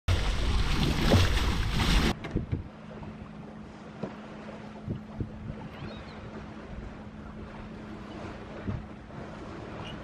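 Wind buffeting the microphone aboard a sailing boat, loud for about the first two seconds, then dropping to a softer rush of wind and water with a steady low hum and a few light knocks.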